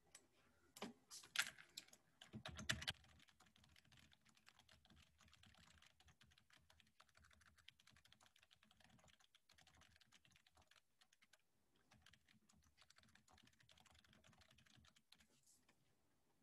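A few louder knocks and clicks in the first three seconds, then steady faint typing on a computer keyboard that stops shortly before the end.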